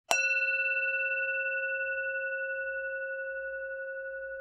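A single struck bell-like chime, a ding that rings on as one sustained tone and fades slowly.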